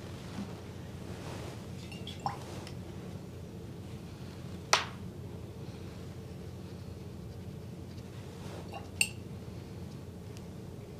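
Three light clinks of painting tools against glass, about two, five and nine seconds in, the middle one the loudest, over a steady low hum.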